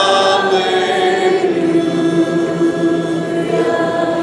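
Church congregation singing a worship song, voices moving through a phrase and then holding one long note.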